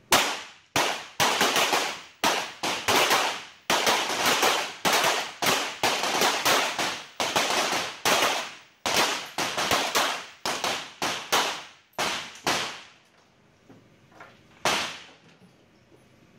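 Several .22LR semi-automatic target pistols fired together by shooters on neighbouring firing points: dozens of sharp, overlapping shots in quick strings, each with a short echoing tail. The firing stops about three-quarters of the way through, and one last shot comes near the end.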